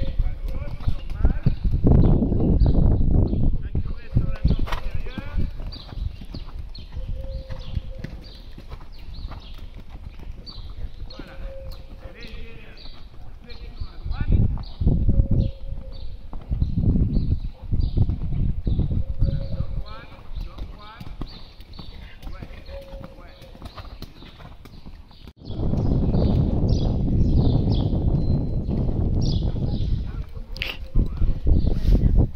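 Horse cantering on a sand arena: hoofbeats in a steady rhythm. Wind rumbles on the microphone in loud gusts, the strongest near the start and in the last few seconds.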